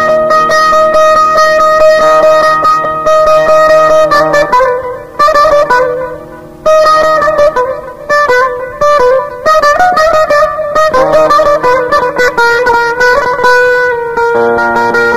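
Instrumental passage of Kurdish folk music led by a plucked string instrument: long held notes for the first few seconds, then a melody stepping from note to note, with a brief dip in volume about six seconds in.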